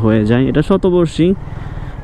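A man speaking, then, from about one and a half seconds in, a motorcycle engine running under wind noise on the rider's microphone as the bike rolls along.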